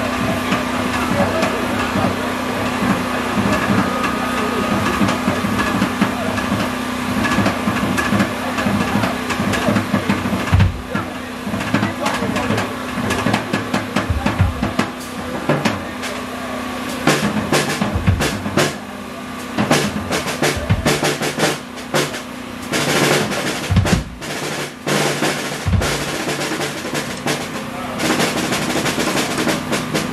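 Live band with a drum kit: a held chord under busy drumming at first, then from about ten seconds in the drummer plays hard, broken-up fills of snare and kick hits with short gaps between them.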